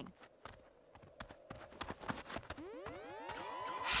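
Cartoon soundtrack: faint, scattered light ticks and taps, then a swell of rising tones about two and a half seconds in that settles into a held high note near the end.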